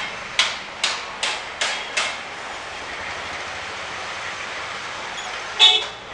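Busy street traffic heard from a moving vehicle: a quick series of about six sharp, ringing beats in the first two seconds, then steady road noise, and a short, loud horn toot near the end.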